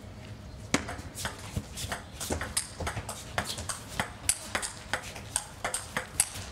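Table tennis rally: the plastic ball clicking sharply off the rubber-faced rackets and the table, a quick even run of about two to three ticks a second.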